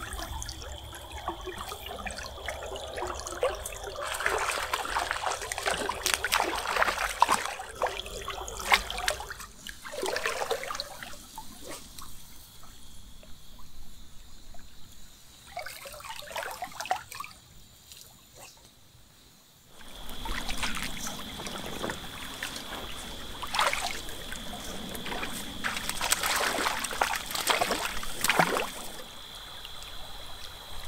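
Shallow stream water trickling and splashing around a wading angler's legs, with irregular louder splashes. The water sound drops away to a much quieter stretch in the middle, then returns.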